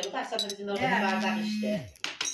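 Women's voices and laughter with light clinking of tableware.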